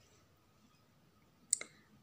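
Near silence, then a single sharp click about one and a half seconds in.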